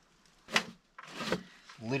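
Two short scrapes of a hand brush sweeping dust across the van's rear floor by the back door sill, a sharp one about half a second in and a longer one about a second in. A man starts talking near the end.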